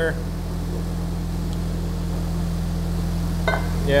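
Parts tumbler running in the shop, a steady low hum that does not change.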